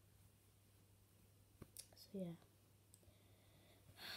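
Near silence: quiet room tone with a faint low hum, broken by a few faint clicks about a second and a half in and a brief soft spoken "so yeah".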